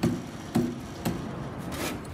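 Hammer blows on plaster investment, chipping it off a bronze casting, about two sharp strikes a second, with a longer scraping stroke near the end.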